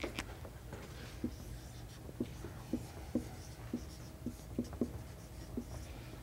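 Chalk writing on a blackboard: a run of short, irregular taps and strokes as words are written out.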